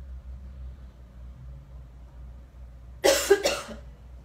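A person coughing: two quick coughs close together about three seconds in, over a low steady room hum.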